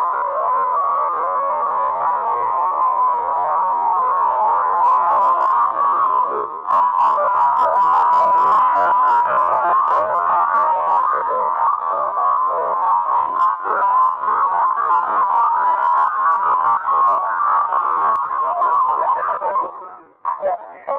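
Loud, steady, warbling electronic tone from an animation's soundtrack, with a brief dip about six and a half seconds in.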